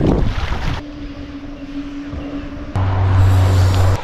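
Wind buffeting the microphone over choppy lake water, broken by abrupt cuts: under a second in it drops to a quieter stretch with a faint steady hum, and near the end a loud low rumble sets in.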